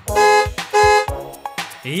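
A car horn honking twice: two short, steady toots in quick succession.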